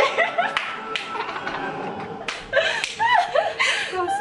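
Several young women squealing, whooping and laughing in excitement, with a few sharp hand claps, over music in the background.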